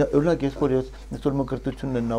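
Speech only: a man talking in conversation.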